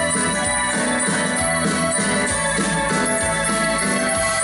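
A live dance band playing a waltz, an instrumental passage with a steady beat.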